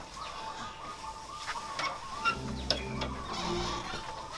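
Faint animal calls in the background, wavering and repeated, with a few soft clicks.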